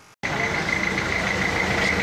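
Minibus engine running close by in a street, with a steady high whine over the traffic noise; the sound cuts in abruptly just after a moment of near silence.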